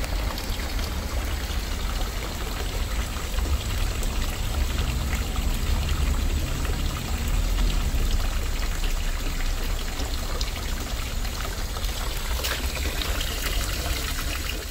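Water pouring steadily from a stone fountain's spout and splashing into the water of its stone basin, a continuous even splashing.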